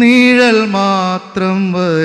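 A man's voice singing a slow melody, unaccompanied, holding long notes that glide up and down and breaking off briefly just past the middle.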